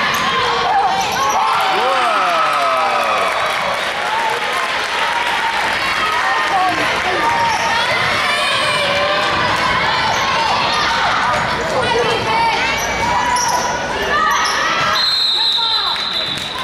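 Basketball game on a hardwood gym floor: the ball bouncing as players dribble, sneakers squeaking, and spectators talking. A referee's whistle blows about a second before the end.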